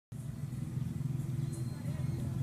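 Steady low hum of a running engine, with faint voices in the background.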